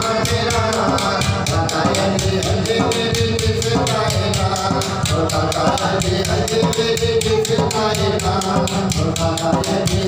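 Sufi devotional kalam sung into a microphone over a fast, steady hand-drum beat with rattling percussion, about five strokes a second.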